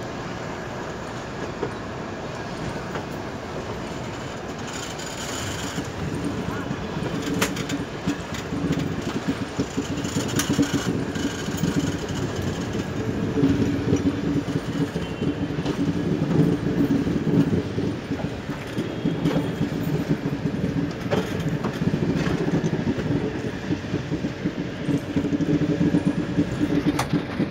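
Indian express train pulling out of a station, heard from aboard a coach: wheels clicking over rail joints and points with a steady running rumble. The sound grows louder from about five seconds in as the train gathers speed.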